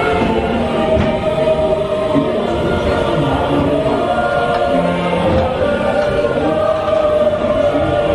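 Choral music from the ride's soundtrack: a choir singing long held notes.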